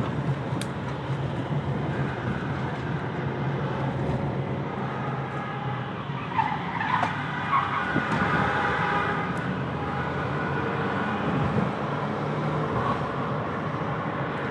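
A car's engine and road noise, heard from inside the cabin while the car is driven in a chase. A steady low engine drone runs under a rushing road and tyre noise, and a fainter higher whine comes in around the middle.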